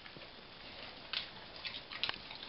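A dog snuffling and licking at a vinyl kitchen floor, cleaning up spilled food crumbs, with a few soft clicks about a second in and near the end.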